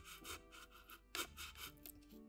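A wooden stick scratching lines into a block of foam to give it a wood-grain texture: a series of short, dry scratching strokes with a brief pause in the middle, over soft background music.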